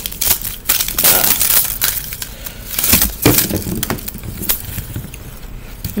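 Crinkling, rustling and tearing of the wrapper strip on an L.O.L. Surprise ball as it is peeled off by hand. The crackles come irregularly and thin out near the end.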